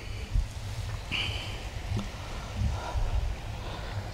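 Quiet outdoor background between phrases: an uneven low rumble, with a brief faint high tone about a second in.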